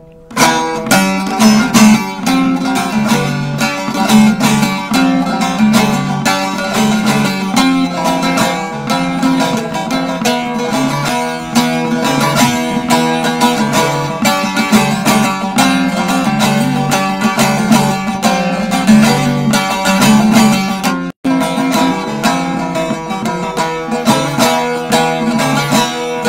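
Bağlama (Turkish long-necked saz) played solo as the instrumental introduction to a türkü, a fast run of plucked notes over a steady drone. The sound cuts out for a split second about 21 seconds in.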